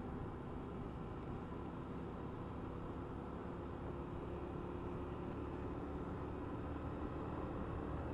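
Honda Wave 125 motorcycle's single-cylinder four-stroke engine running at a steady cruise, its faint hum under a steady rush of wind and road noise.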